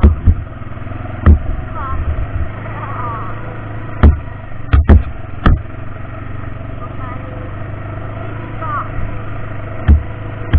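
ATV engine running steadily as the quad rides along a rough dirt track, broken by several loud, sharp knocks, the loudest bunched around the middle.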